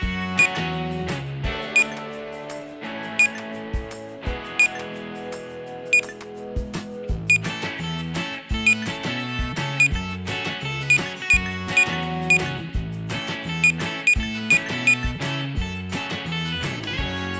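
Short high electronic beeps of items being scanned at a toy supermarket checkout, repeating irregularly and coming in quicker runs in the second half, over upbeat background music.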